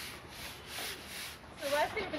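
Several hand brooms sweeping a paved road, their bristles scraping across the surface in repeated swishing strokes.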